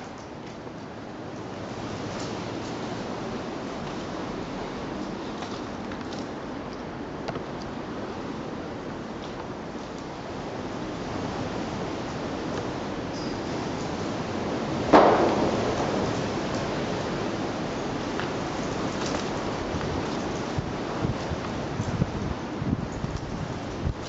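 Steady rush of wind, growing louder about two seconds in, with one sharp knock about fifteen seconds in.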